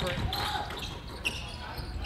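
Faint sounds of basketball play on a gym court: a basketball bouncing and a few short sneaker squeaks on the floor.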